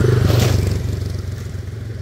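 Small step-through motorbike passing close by, its engine hum loudest in the first half-second and then fading as it moves away.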